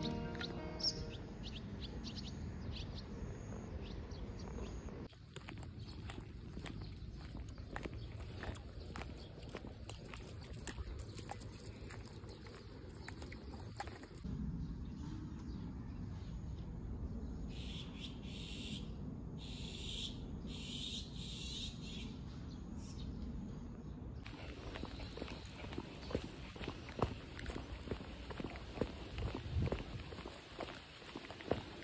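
Outdoor ambience under trees: a low steady rumble with scattered bird chirps, broken by a run of about five high pulsing calls roughly a second apart in the middle. Background music fades out in the first second, and footsteps on asphalt come in near the end.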